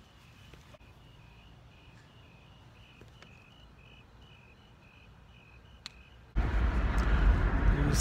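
Crickets chirping faintly, a steady run of short, evenly spaced chirps. About six seconds in this cuts to a car driving with all the windows down: loud wind and road rumble.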